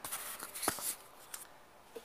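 Handling noise of the camera being moved and set back in place: rustling with a sharp click about two-thirds of a second in, dying down after about a second.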